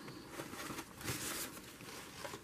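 Faint rustling and rubbing of paper as hands press and smooth a paper cutout onto a journal page.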